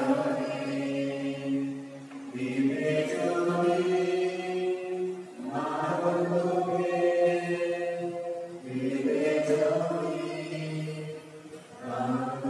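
A man's voice chanting liturgical text in about four long phrases. Each phrase is sung on held, steady low notes, with short breaks between them.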